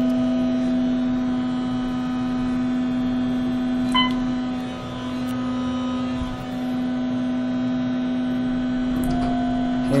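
Steady hum inside a moving Otis hydraulic elevator car, with one short electronic chime about four seconds in.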